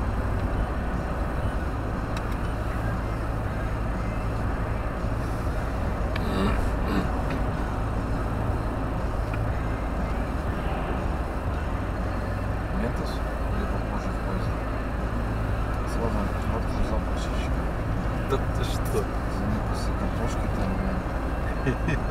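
Steady road and engine noise inside a moving car's cabin, with a deep low rumble and tyre hiss, plus a few light clicks.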